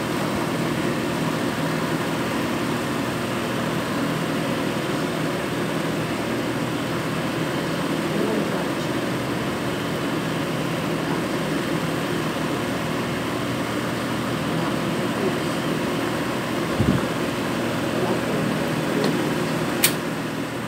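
A steady mechanical hum with a hiss over it, with a low knock about three quarters of the way through and a sharp click near the end.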